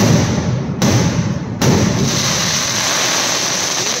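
A dense, continuous barrage of fireworks: a loud, unbroken rush of blasts and crackle that starts suddenly and holds steady, with brief dips just before one and two seconds in.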